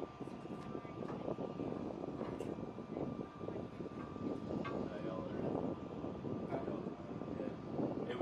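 Flight-line ambience: a steady high whine over a continuous rumble from running aircraft or ground equipment, with indistinct voices and a few light knocks.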